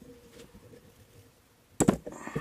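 Low room tone, then a single short, loud knock just before the end.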